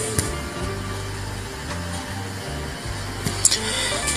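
Background music carried mainly by a low bass line, with no singing; a few faint clicks near the end.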